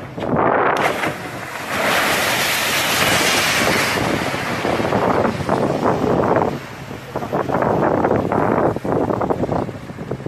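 Sea water rushing and churning where a free-fall lifeboat has plunged into the sea, mixed with heavy wind buffeting the microphone. A loud rushing surge builds about a second in, then the wash comes and goes in gusts.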